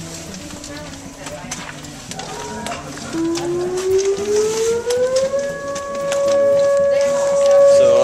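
An attack-warning siren winds up, its pitch rising from about three seconds in and levelling off into a steady tone about two seconds later, with scattered knocks and voices under it.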